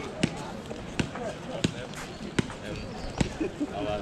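Walking footsteps picked up through a worn camera, a sharp thud about every three-quarters of a second, over steady background crowd chatter.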